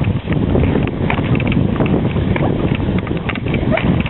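Skis sliding and crunching over packed snow, with ski poles planting and a dog's paws running, in a steady, dense scraping.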